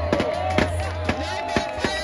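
Loud music with a heavy, steady bass played over a sound system, with a crowd's voices and a few sharp knocks mixed in.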